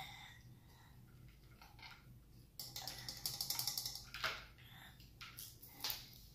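Thin plastic water bottle being picked up and handled, crinkling in a dense run of crackles about halfway through, with a couple of sharper clicks after.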